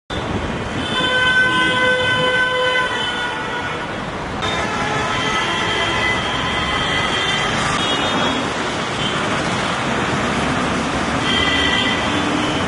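Street traffic noise with vehicle horns honking: a long horn blast about a second in that holds for about two seconds, further horns through the middle, and another short one near the end.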